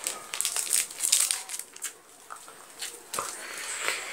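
Crinkling and tearing of a chewing-gum wrapper as a piece is unwrapped by hand, busiest in the first two seconds, then quieter with a single click near the end.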